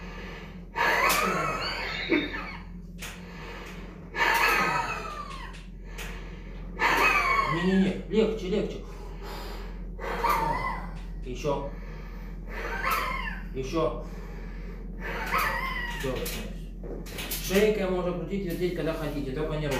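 A man gasping and groaning aloud in about eight wordless bursts, every two to three seconds, breathing out hard as his back is pressed along the spine during manual bone-setting.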